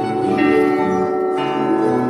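A live folk ensemble plays an instrumental passage on plucked string instruments, including a table-top gusli, with sustained ringing notes. A new chord is struck about half a second in and again near the end.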